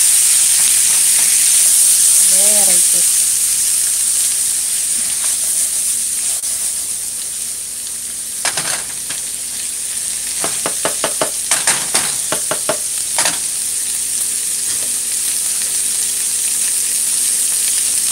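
Diced tomatoes, onion and smoked pork sizzling steadily in hot coconut oil in a frying pan while being stirred with a silicone spatula. Between about 8 and 13 seconds in there is a quick run of clicks as the spatula knocks and scrapes against the pan.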